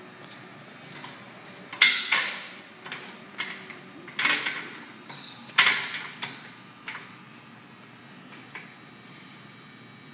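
Steel frame and foot plate of a glute ham developer machine knocking and clanking as a person climbs onto it and sets his feet. The three loudest knocks come about 2, 4 and 5½ seconds in, with lighter taps between them and a brief squeak near 5 seconds.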